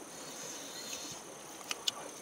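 Steady high-pitched drone of insects, with two short sharp clicks near the end.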